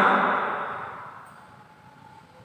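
The echo of a man's voice through the microphone and loudspeakers of a large mosque hall, dying away smoothly over about a second and a half after he stops speaking, then faint room tone.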